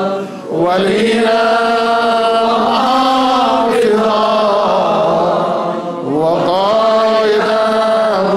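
A large group of male voices chanting together in unison, long held phrases broken by short pauses for breath about half a second in and again around six seconds.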